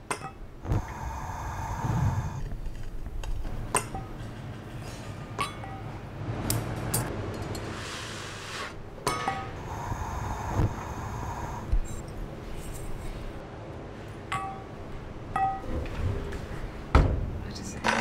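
Blown glass and metal glassworking tools clinking and tapping, about eight sharp strikes spread out, each ringing briefly. A hiss, such as a gas torch makes, runs through the middle.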